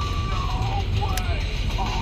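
Steady low rumble of the truck's engine heard inside the cab as it pulls over, with faint music over it and a voice starting near the end.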